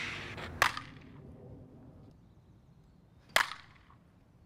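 A softball bat hitting a ball twice, about three seconds apart, each a sharp crack. Near the start, a whoosh fades away.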